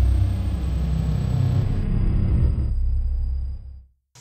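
A steady low rumble with a faint thin high tone above it, fading out near the end.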